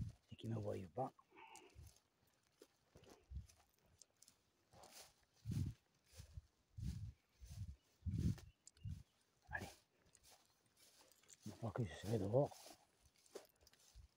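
Footsteps swishing through tall grass at a walking pace, a short low thud with each step. Brief muttering from a man's voice comes near the start and again near the end.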